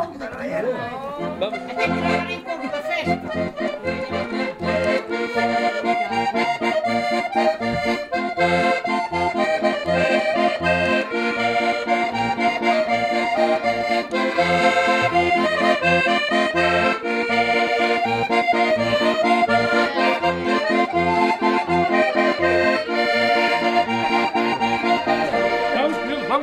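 Button accordion playing a tune: a melody over a steady pulsing bass-and-chord accompaniment, building up in the first couple of seconds.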